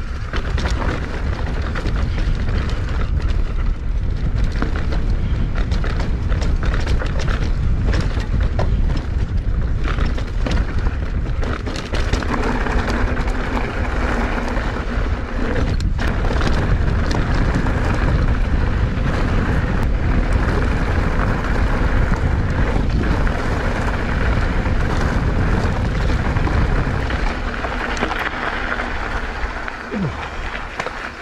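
Wind buffeting the action-camera microphone, with mountain bike tyres rolling over a rutted dirt and gravel track and the bike rattling and knocking over stones on a descent. It grows quieter near the end as the bike slows.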